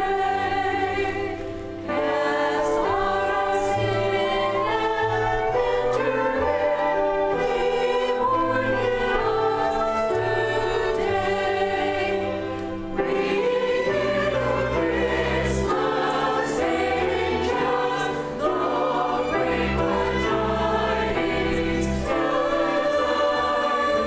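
Mixed church choir singing a cantata movement with a string ensemble of violins, cello and double bass, in sustained chords over a bass line. The music eases briefly between phrases about two, thirteen and eighteen seconds in.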